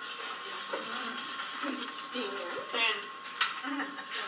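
Several people talking at once and indistinctly in a small room, no single voice standing out.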